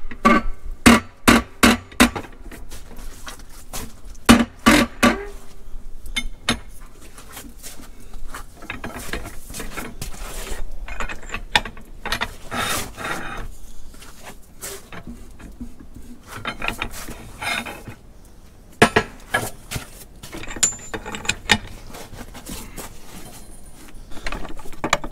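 Long-handled ratchet wrench clicking in quick runs as it is swung back and forth, with short metallic squeaks, while a seized pre-combustion chamber is turned out of a scrap Caterpillar D2 diesel cylinder head.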